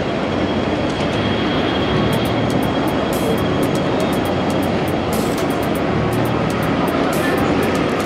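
Busy city street ambience: a steady wash of traffic and crowd noise with a faint, thin, steady high tone running through it.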